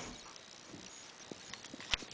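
A few faint, scattered knocks and clicks in a quiet room, the sharpest one near the end.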